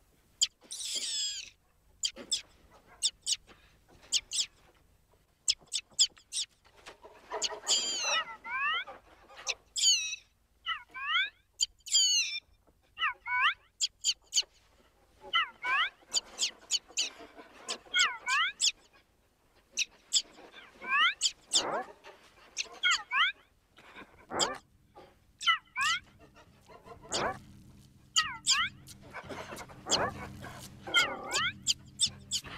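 Birdsong: quick runs of short whistled chirps and trills, many sliding down or up in pitch, coming in bursts a second or two apart.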